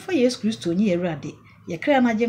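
A woman speaking with lively rising and falling intonation, with a short pause about a second and a half in.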